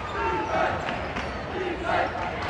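A basketball being dribbled on a hardwood gym court, under the chatter and calls of spectators in the stands.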